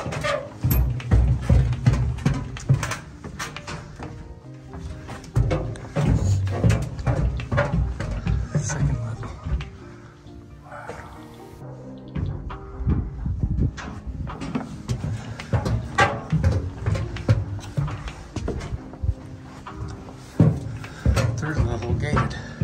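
Background music, with held low notes and many short beat-like strikes.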